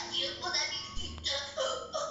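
A cartoon character's voice speaking in short phrases over soft music, played through a television's speaker.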